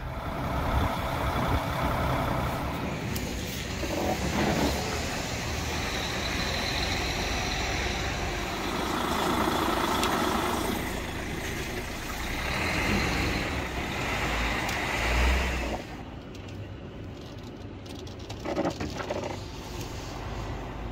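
Heavy diesel trucks running, with a steady low engine rumble that changes as the scene cuts. The rumble swells about fifteen seconds in, and the last few seconds are quieter.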